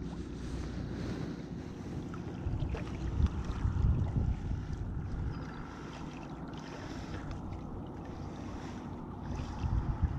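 Wind buffeting the microphone in a low, uneven rumble, over small waves lapping on choppy water.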